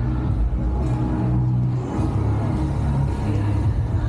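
Street traffic rumble: a large SUV's engine running as it drives through the intersection, heard as a steady low rumble.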